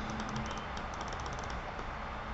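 Faint, quick light clicks at a computer, coming in irregular runs, over a steady low hum.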